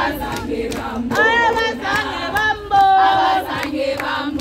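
A group of women singing together in full voice while clapping their hands in time, with one long held note about three seconds in.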